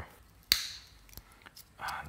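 A single sharp click about half a second in, followed by a few faint small ticks.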